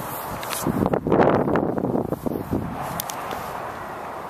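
Footsteps and rustling on a dry grass lawn, uneven and loudest about a second in, with no speech.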